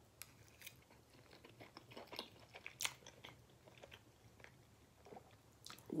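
A person quietly chewing a mouthful of baked penne pasta in tomato sauce with bacon, with scattered soft wet mouth clicks and one sharper click about three seconds in.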